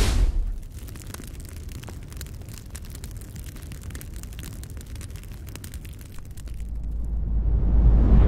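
Intro sound effects for a flaming logo: a loud burst of flame at the start, then a steady crackling fire over a low rumble, then a deep boom that swells up over the last second and a half.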